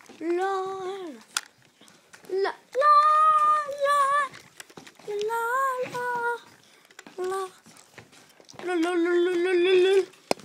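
A child's voice singing wordless held notes, about six in a row with short gaps between them, the pitch shifting from note to note and the last one held longest.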